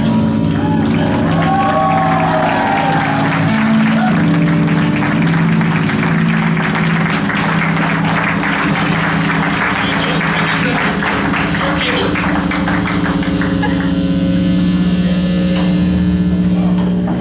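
Punk rock band playing live: amplified electric guitars and bass hold a steady droning chord under a dense clatter, with some wavering higher guitar tones in the first few seconds.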